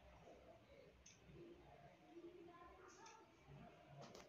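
Near silence with a few faint clicks of metal knitting needles tapping together, about a second in, near three seconds and at the end, as stitches are knitted together and slipped off to decrease them.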